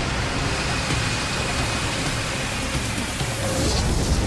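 Steady roar of Boeing 747 jet engines at full takeoff thrust with a deep rumble underneath, as a sound effect in a dramatised crash reconstruction.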